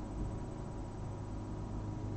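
Steady background hiss with a constant low hum and no distinct events: room tone between spoken remarks.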